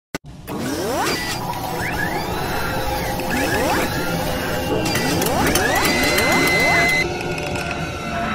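Mechanical sound effects for an animated logo intro: repeated rising whirs like servo motors, with clicking and ratcheting. A held high tone near the end stops about seven seconds in.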